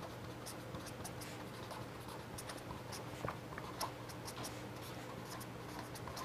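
Marker pen writing on paper: a quick run of short, faint strokes as letters are drawn, over a steady low hum.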